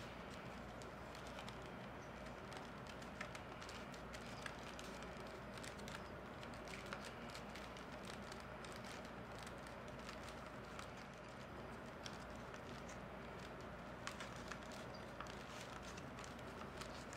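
Reed weavers being packed down on a basket with a packing tool and fingers: faint, irregular small clicks and rubbing of reed against reed, over a steady low background hiss.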